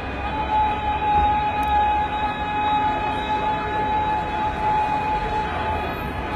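A single steady high tone, held flat for about five seconds, over a dense background din and low rumble.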